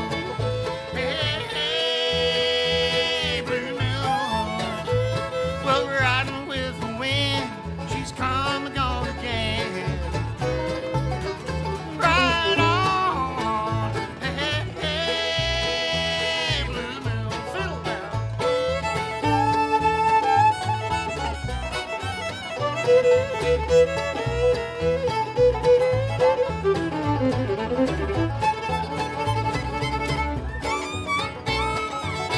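Live bluegrass band playing an instrumental break: fiddle with sliding, wavering melody lines and banjo over guitar and a steady upright bass pulse.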